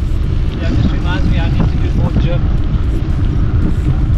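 Wind buffeting the microphone of a camera carried on a moving bicycle, a steady low rumble. A person talks indistinctly through the first half or so.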